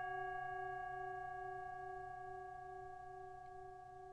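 A single sustained bell-like tone ringing out and slowly fading away, its lowest pitch wavering slightly.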